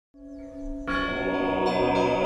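Church bells ringing, fading in from silence. A fuller, louder ringing enters just under a second in and holds steady.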